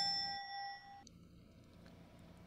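A single bright bell ding, struck once and ringing for about a second before cutting off abruptly, marking a correct quiz answer.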